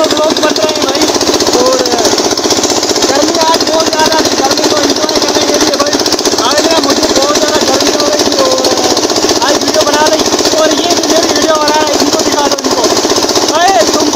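A water-pump engine running steadily and loudly with a rapid, even pulsing beat, with voices talking over it.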